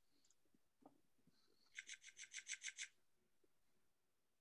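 Near silence with a faint room tone, broken about two seconds in by a quick, even run of about nine light scratchy clicks lasting about a second.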